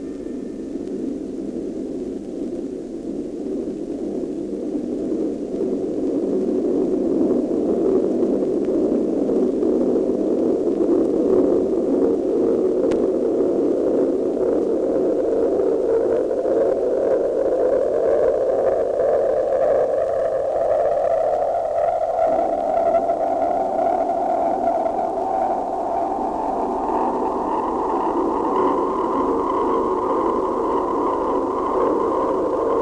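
A loud rushing roar that builds over the first several seconds, then slowly rises in pitch and gains a whistling edge in its second half. It is a film sound effect for the descent capsule coming down through the atmosphere.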